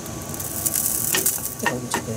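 Chopped onion and anchovy sizzling in olive oil in a frying pan, a steady hiss. In the second half a wooden spatula stirs them, clicking and scraping against the pan a few times.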